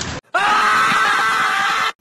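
A woman's scream, one long, high, held cry of about a second and a half, cut off abruptly: a shriek of pain and shock as a fish clamps its teeth onto her.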